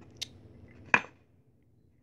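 Brass Armor Zippo lighter being handled: a faint click, then a sharp metallic clack from its lid and hinge about a second in.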